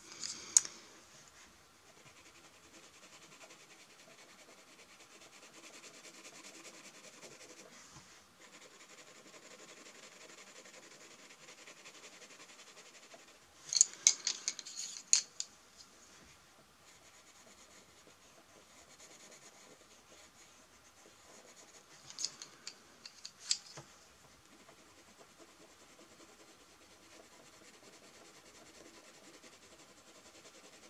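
Castle Art coloured pencil shading on paper, a faint steady scratching and rubbing of the lead. Short clusters of louder clicks break in about a second in, about halfway through, and again about three quarters through.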